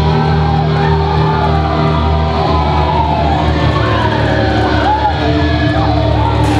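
Loud amplified electric guitars and bass holding a sustained drone, with wavering guitar-feedback tones gliding up and down above it, as a live rock song rings out.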